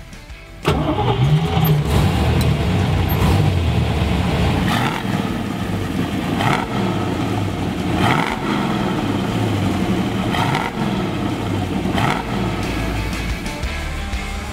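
1969 Dodge Coronet Super Bee's 426 Hemi V8 starting up suddenly about a second in, then running at idle and revved in short blips every couple of seconds, each rise in pitch falling back to idle.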